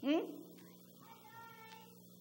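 A woman's short questioning "Hmm?" sliding up in pitch, then a faint, held voice-like tone about a second in; no cat or other animal.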